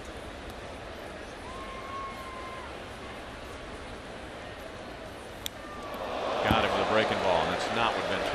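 Ballpark crowd murmur, then a single sharp crack of the bat hitting the pitch about five and a half seconds in. The crowd swells into cheers and shouts right after.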